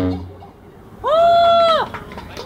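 The dance track's last sound fades out, then about a second in a high-pitched voice holds one long note for just under a second, sliding up at the start and down at the end.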